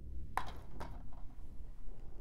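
Handling noise from a plastic DVD case being turned over in the hand: one sharp click about a third of a second in and a fainter one shortly after, over low room rumble.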